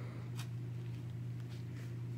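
Steady low electrical hum, with a faint click about half a second in.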